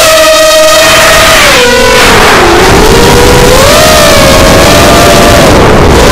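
Motors and propellers of a Bantam 210 racing quadcopter heard through its onboard camera: a loud whine from several close tones over a rush of wind noise. The pitch sags lowest about two and a half seconds in, then climbs and wavers again as the throttle changes.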